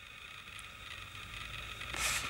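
Faint steady background hum with a low rumble, inside a plane cabin, growing slightly louder toward the end.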